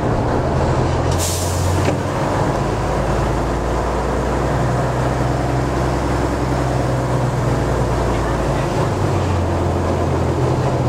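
Small diesel shunting locomotive's engine running steadily, heard from inside its cab as it moves slowly along the track, with a short hiss a little over a second in. The engine note shifts near the end.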